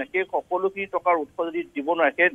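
Only speech: a man's news voice-over, talking without pause.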